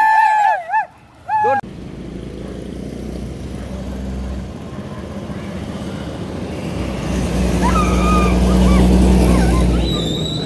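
Motor scooter engine running close by with road noise, louder over the last few seconds as the scooter sits near. A short stretch of voice comes before an abrupt cut about a second and a half in.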